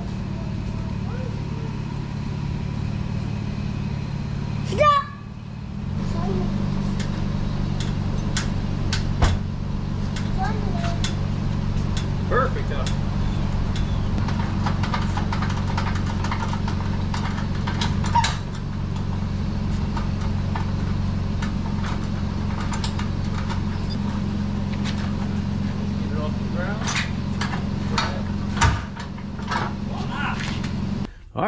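Toyota Tacoma pickup idling steadily as a boat trailer is hitched to it, with sharp metal clinks from the trailer coupler and safety chains scattered through.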